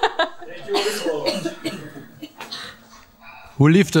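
Women's voices laughing and talking, loosely and unscripted, for the first couple of seconds. A woman begins speaking clearly near the end.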